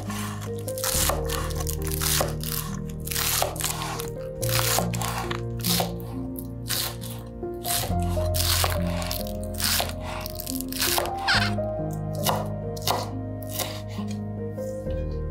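Chef's knife chopping green onions on a wooden cutting board: crisp, crunchy strikes about two a second, over background music.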